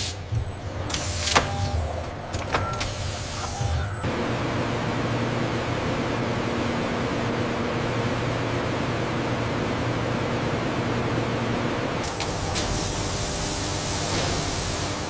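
Robotic arm servos whirring in short bursts with mechanical clicks, then, about four seconds in, a steady rush of air from a bank of large industrial fans over a low hum. Near the end a few clicks and a brighter hiss come in.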